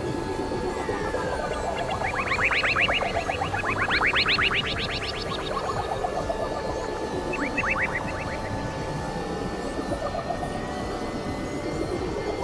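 Experimental electronic music built from several tracks layered at once: steady held synthesizer tones, with quick runs of short rising chirps that come in two clusters, a longer one from about two to five seconds in and a shorter one near eight seconds.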